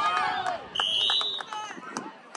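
A referee's whistle blown once: a short, shrill blast about a second in, over faint spectator voices.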